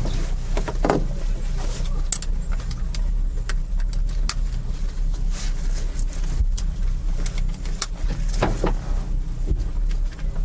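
Powerboat engines idling with a steady low rumble, with scattered clicks and knocks from inside the race boat's cockpit.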